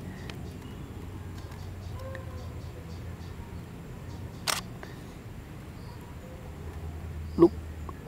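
A single camera shutter click about halfway through, over steady low outdoor background noise.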